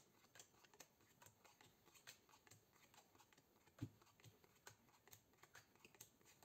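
Near silence with faint, irregular soft clicks of playing cards being dealt onto a tabletop, one a little louder about four seconds in.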